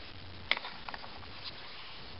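Plastic cover of an underhood fuse and relay box being handled as it comes off: one sharp click about half a second in, then a few faint ticks over a low steady hiss.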